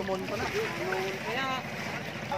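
Background voices of people calling and talking, one rising call about one and a half seconds in, over a steady outdoor rush of wind on the microphone.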